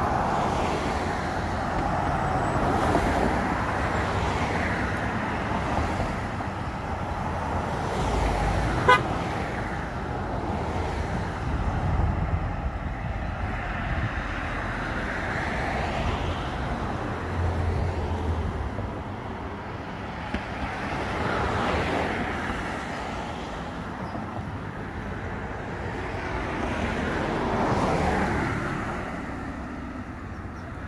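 Street traffic: cars passing one after another, each swelling and fading over a few seconds. There is a short sharp click about nine seconds in.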